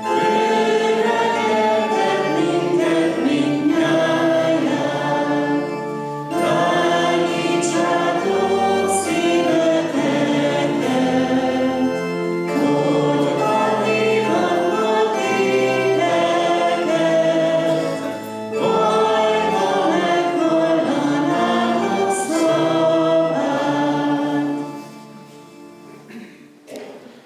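A church congregation singing a hymn together in long held phrases, led by a woman's voice and an acoustic guitar. The song ends near the end with a fading last note.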